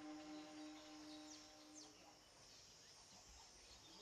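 Near silence: faint outdoor ambience with a few brief, faint high bird chirps. A faint steady low tone fades out a little past halfway.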